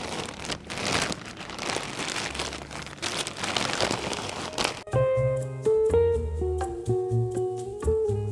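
A plastic bag of mulch crinkling and rustling as it is handled and pushed into a planter, for about the first five seconds. It then cuts off abruptly and light background music with plucked bass and guitar notes takes over.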